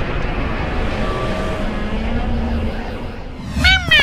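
Steady rumbling roar of a cartoon fire and power-up sound effect. Near the end it drops away and a high cartoon voice starts giggling in short rising-and-falling squeals.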